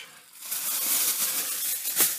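Plastic bag rustling as it is handled, starting about half a second in.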